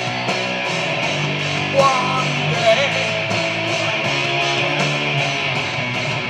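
Live rock band playing: electric guitars strummed over drums keeping a steady beat.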